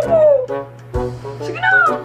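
A woman's drawn-out, whiny vocalizing without clear words, over background music. Her pitch slides down at the start and rises then falls again near the end.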